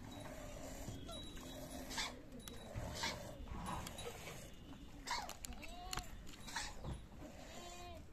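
Goat milk squirting by hand into a steel tumbler, one short hissing stream about every second as the teats are stripped.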